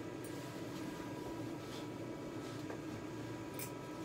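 A few faint, brief snips of grooming scissors cutting a dog's facial hair at the eye corner, the clearest near the end, over a steady low background hum.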